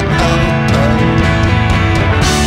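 Rock song with electric guitar prominent, played over a steady, sharply accented beat.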